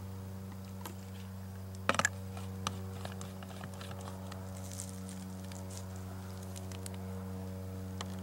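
Plastic clicks and light handling noise as a water filter's cap is screwed onto a plastic water bottle, with a pair of sharp clicks about two seconds in and a few smaller ticks after. A steady low hum runs underneath throughout.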